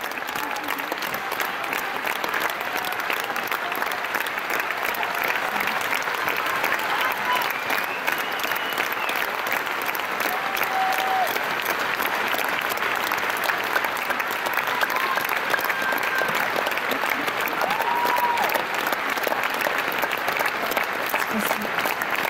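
Large audience applauding steadily, with a few brief calls from the crowd rising above the clapping.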